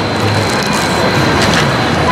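Steady outdoor street noise of traffic and crowd, with a faint thin high whine running through it.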